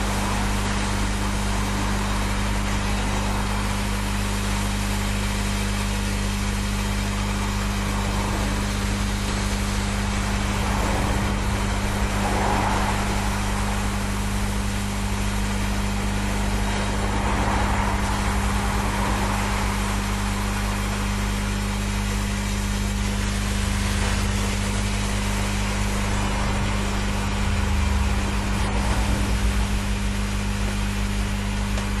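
A steady hiss over a low, even hum as a heat tool warms a thick battery-cable terminal lug for soldering, with a few faint swells in the hiss partway through.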